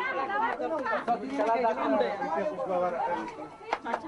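A group of women talking and calling out over one another in lively chatter.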